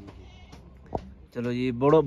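A sheep bleating once with a quavering call, starting about 1.4 s in, after a short soft knock.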